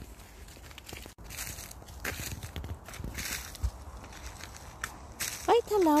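Footsteps on a frozen dirt path strewn with dry leaves, irregular short steps over a low rumble, with one spoken word near the end.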